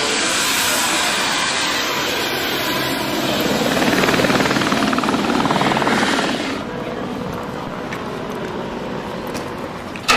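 Helicopter running: a loud, steady rush of rotor and turbine noise with a fast blade beat, strongest in the middle, easing off a little after about six and a half seconds.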